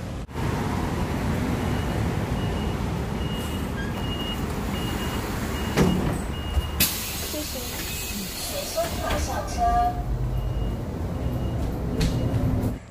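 Inside a moving city bus: steady engine and road rumble, with a short high beep repeating about twice a second for several seconds. A sudden loud hiss of air comes a little past halfway.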